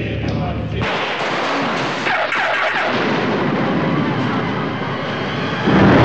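Film sound effect: a low drone gives way about a second in to a sudden, loud, dense wall of noise that holds steady, surging louder near the end.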